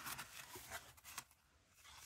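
Faint rustling of heavy paper being handled and folded, fading to near silence a little past the middle.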